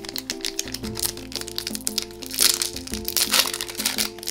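Foil wrapper of a trading-card booster pack crinkling and crackling in the hands as it is opened, over background music with a simple repeating melody.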